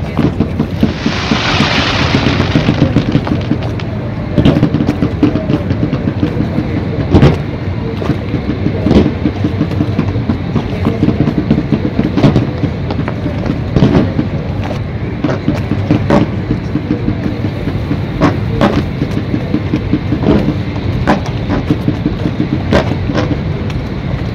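Fireworks going off over a river: about a dozen sharp bangs at irregular intervals over a steady low rumble, with a rushing hiss about a second in.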